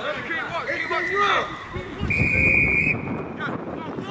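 Referee's whistle blown twice over players' shouts: a shorter, fainter blast just under a second in, then a louder, longer blast about two seconds in.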